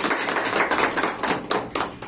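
Applause from a small audience: many quick, irregular hand claps that thin out near the end.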